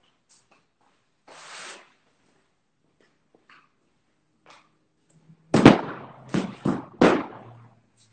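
A brief rustle, then four loud knocks and thumps in quick succession near the end, each dying away quickly: handling noise close to the microphone.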